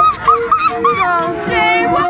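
Young women's voices squealing and laughing in about four short, high-pitched bursts, then drawn out into long held calls.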